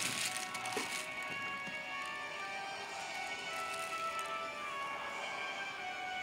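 Background theme music with a dark feel, playing at a moderate level with long held notes.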